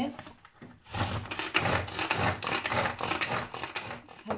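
Pull-cord manual food chopper worked in a run of quick pulls from about a second in, its spinning blades rasping through hard-boiled eggs.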